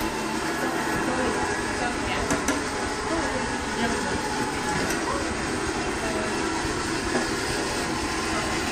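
A steady din of several voices talking and laughing at once, with no single clear speaker and a few faint clicks.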